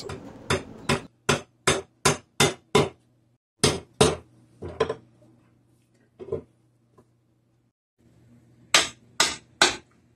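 Hammer blows driving the tapered wooden joints of a Windsor chair together: a quick run of seven sharp taps, about two and a half a second, then a few scattered single taps, and three more in quick succession near the end.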